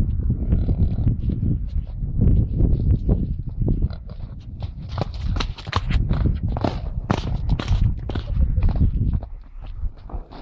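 Hoofbeats of two ponies cantering and trotting loose on wet, muddy sand: dull thuds with a run of sharper hits in the middle seconds, over a constant low rumble.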